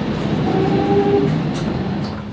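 Isuzu Erga city bus heard from inside the cabin, its engine and driveline running as it pulls away from the stop, with a steady whine over the rumble for about a second.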